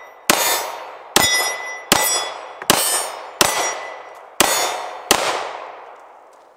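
Seven shots from a Kahr ST9 9mm pistol, fired at an even pace of about one every 0.7 to 1 s. Each shot is followed by the ringing clang of a metal target being hit.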